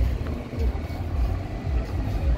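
Wind buffeting the microphone: an uneven low rumble that surges and dips in gusts.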